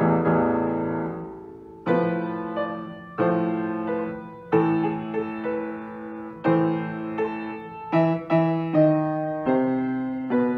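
Upright piano played solo: chords struck one after another, each left to ring and fade, the strikes coming quicker in the second half.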